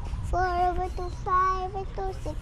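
A young child singing a counting song about little buses, with two long held notes, one in the first half and one in the second.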